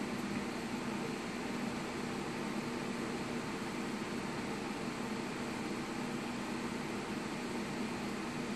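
A steady, unchanging fan-like hum with hiss in a small room, with no clicks or other events.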